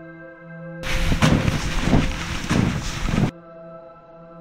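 Boots crunching through snow, with wind rushing on the microphone, loud over a sustained ambient music drone. The crunching steps come about two-thirds of a second apart, starting suddenly about a second in and cutting off sharply near the end.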